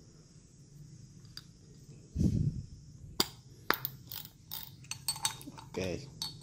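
Sharp, irregular metallic clicks and clinks from a Daiwa Seiko spinning reel as its bail, spool and drag knob are worked by hand, starting about three seconds in. A short low vocal sound comes about two seconds in.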